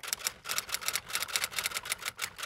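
Typing sound effect: a rapid, uneven run of key clicks, about ten a second, keeping time with text being typed out on screen.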